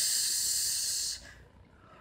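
A man's voice drawing out a long hissing "sss", the stretched end of the word "terus", for about a second before it stops. Quiet room tone follows.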